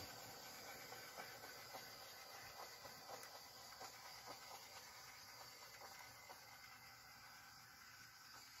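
Near silence: faint room tone with a steady high hiss and a few soft scattered ticks.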